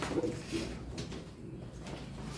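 A bird cooing in low tones, with a couple of light clicks.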